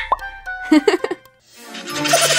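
Short cartoon-style plop sound effects and a brief voice sound, then the sound dies away and a rising swell of noise builds near the end.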